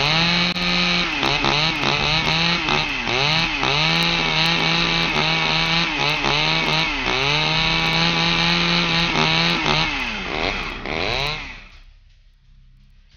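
Chainsaw engine revving, its pitch dropping and climbing again many times as the throttle is worked. It dies away near the end.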